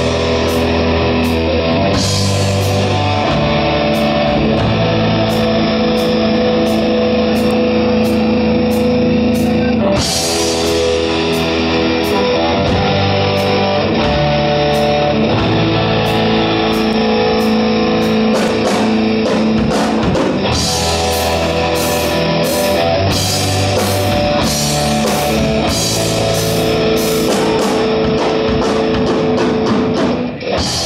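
Live rock band playing: electric guitar chords over bass guitar and a drum kit, with cymbals struck in a steady beat.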